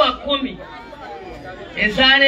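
Speech only: a woman talking into a handheld microphone, a pause with faint background chatter in the middle, and the voice resuming near the end.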